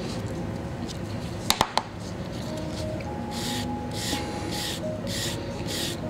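A Surform rasp shaving leather-hard clay in short repeated scraping strokes, about two a second, starting about halfway through. Before them come a couple of sharp knocks.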